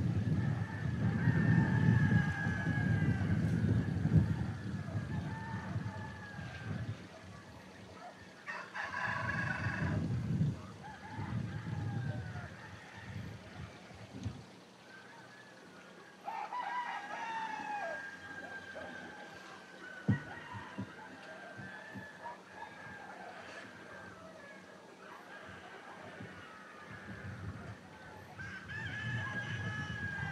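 Roosters crowing, several calls overlapping, some falling in pitch at the end. A low rumble runs under the first few seconds and returns briefly near the middle, and a single sharp click comes about twenty seconds in.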